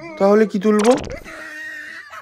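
A wordless, whining vocal sound from a person in two short bursts during the first second, then a faint steady tone.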